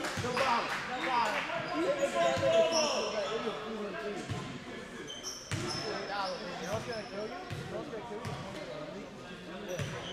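Voices talking over one another in a large gym, with a basketball bounced a few times on the hardwood court at irregular gaps. A few brief high squeaks come through.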